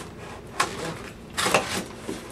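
Cardboard box being handled and shifted on carpet: a sharp tap about half a second in, then a louder cluster of knocks and scrapes around a second and a half in.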